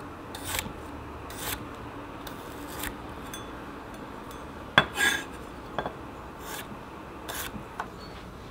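A Zwilling Twin chef's knife slicing garlic cloves on a wooden cutting board: an uneven series of crisp cuts, about one a second, each ending as the blade knocks the wood. The sharpest, loudest cut comes nearly five seconds in.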